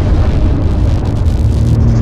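Loud, steady, deep rumbling noise with a hiss over it, a trailer's sound-design rumble. A low hum comes in about halfway through.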